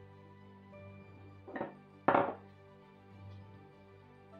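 Soft background music, with two short clinks of kitchenware about a second and a half and two seconds in, the second louder.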